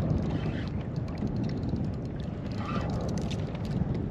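Wind buffeting the microphone and water lapping against a fishing kayak's hull, with faint scattered clicks as the reel is cranked in.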